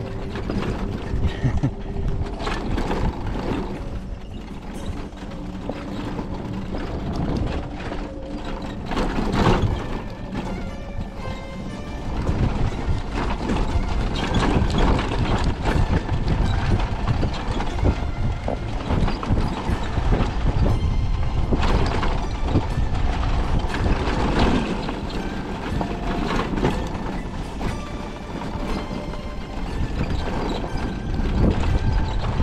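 Electric motorcycle ridden over a bumpy dirt track: a steady low rumble with frequent rattling knocks as the bike goes over ruts and stones.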